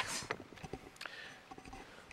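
Podium microphone being handled and adjusted: a few faint, irregular knocks and clicks, the first with a short rush of noise, over quiet room tone.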